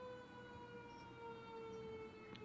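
Faint siren-like wail: one long tone sliding slowly down in pitch.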